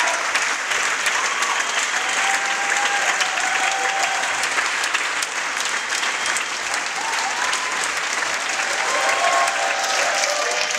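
Audience applauding steadily at the end of a live performance, with a few voices calling out over the clapping.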